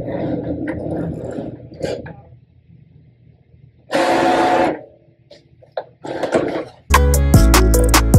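Cricut Maker cutting machine's motors running in short bursts as it feeds and cuts a mat of printable vinyl stickers, with one louder whirring burst about halfway through. Background music comes back in near the end.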